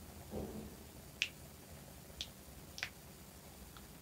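Three sharp, isolated clicks at the computer, the first two a second apart and the third about half a second after that, over faint room tone, while code is put into the editor.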